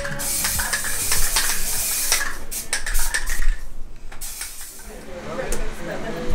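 Aerosol spray-paint can hissing as paint is sprayed onto a wall: one long spray, then a shorter one, with short clicks in between. Voices come in near the end.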